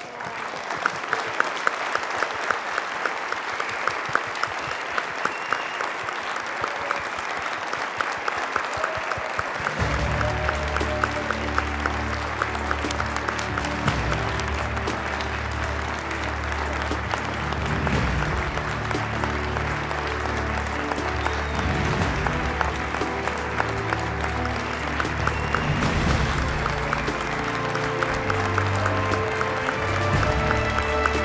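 Audience applauding, a standing ovation with dense, steady clapping. About ten seconds in, music with a bass line starts and plays on under the applause.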